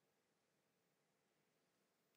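Near silence: a pause in a sermon, with only faint room tone.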